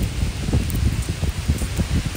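Wind buffeting a handheld phone's microphone: a loud, irregular low rumble with a faint hiss above it.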